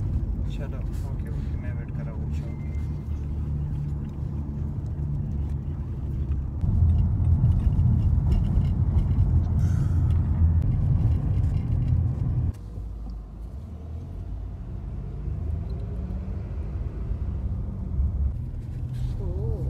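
Low, steady rumble of a moving car's road and engine noise heard from inside the cabin. It grows louder partway through, then drops off suddenly about two-thirds of the way in.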